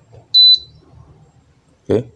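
Bolde digital rice cooker's control-board buzzer giving one short, high beep about a third of a second in, the power-on beep as the cooker is plugged into 220 V mains.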